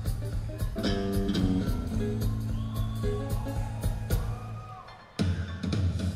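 Live rock band playing the upbeat instrumental intro of a song, before the vocals come in. About four seconds in the music fades down, then comes back abruptly about a second later.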